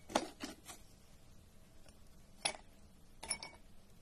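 Ice cubes clinking against a steel plate and dropping into a drinking glass: a few short clinks and clicks, three close together at the start, then one more about two and a half seconds in and another just after three seconds.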